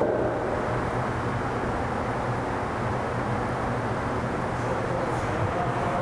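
Steady room noise with a low, even hum and no distinct events.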